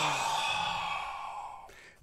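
A man's long, heavy sigh in exasperation: a breathy exhale with a brief voiced start that falls in pitch, fading out over about a second and a half.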